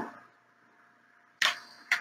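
Handheld butane torch being lit: after a near-silent second, a sudden sharp click about a second and a half in, fading into a short hiss, with a smaller click just before the end.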